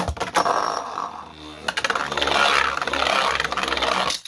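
Beyblade spinning tops whirring and scraping around a plastic stadium bowl, with sharp plastic clacks as they strike each other right at the start and again a little under two seconds in.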